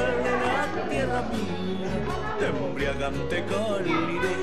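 Background music: the accompaniment of a Spanish-language song, with a steady, repeating bass beat.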